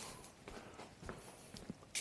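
Faint footsteps walking away off-camera, with scattered soft knocks and one short, sharp click near the end.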